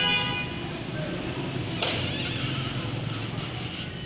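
A vehicle horn sounds briefly as one steady tone at the start, over a steady low background hum. A short sharp clatter follows about two seconds in.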